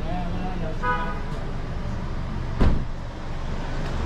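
Street ambience with steady traffic noise. A short pitched sound comes about a second in, and a single sharp thump a little past halfway is the loudest moment.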